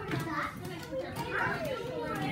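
Young children's voices chattering and calling out. Several high voices overlap, with no clear words.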